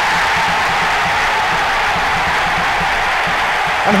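Football stadium crowd cheering a home goal, a steady loud roar with no letting up.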